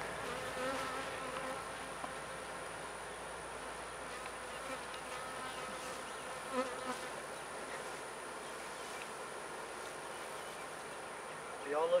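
Honeybees buzzing in a steady hum around an opened hive whose frames are being lifted out.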